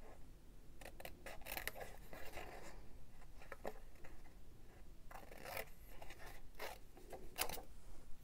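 Small craft snips cutting paper: short, irregular snips as a small stamped shape is cut out by hand.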